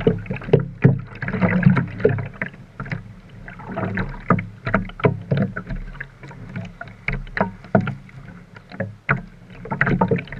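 Seawater splashing and sloshing right at a camera held at the surface, with irregular splashes from front-crawl swimming strokes close by. The splashing is loudest and busiest in the first two seconds.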